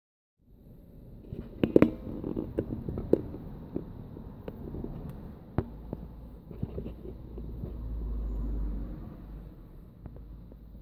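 Car driving on a wet road heard from inside the cabin: a steady low rumble of road and engine noise that swells near the end, with scattered sharp clicks and knocks, the loudest a quick cluster about two seconds in.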